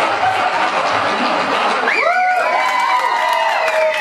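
Audience cheering and clapping, with a long drawn-out whoop starting about halfway through.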